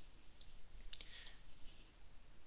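Computer mouse buttons clicking faintly, two short clicks about half a second and a second in.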